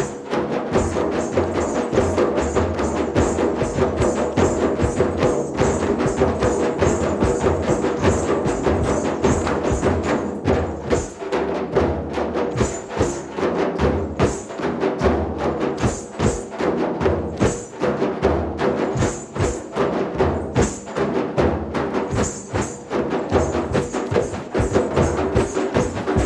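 An ensemble of hand drums, large frame drums and djembes, playing a fast, dense rhythm together without a break.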